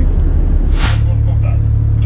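Deep low rumble of a container ship's engine running ahead during unberthing. About a second in there is a short hiss, and then a steady low hum.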